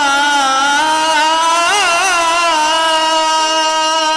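A male singer holding one long, loud sung note, with a quick wavering ornament near the middle.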